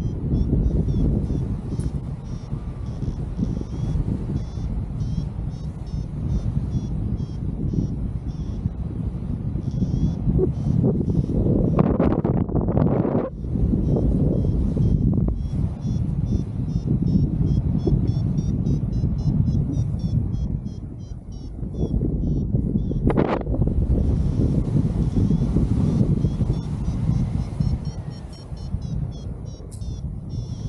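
Airflow buffeting the microphone of a paraglider in flight, a loud, steady low rush with two brief stronger gusts. Over it a paragliding variometer beeps in quick, high-pitched repeating pulses, its signal for climbing air, pausing twice.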